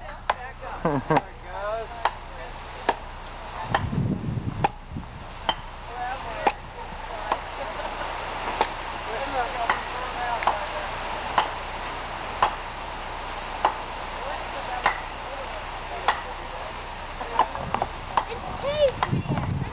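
Chopping blows into a wooden log, struck by hand about once a second, each a sharp single chop.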